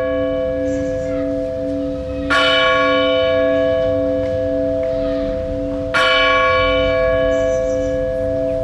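A church bell tolling: struck again about two seconds in and about six seconds in, each strike ringing on long with a wavering low hum beneath it.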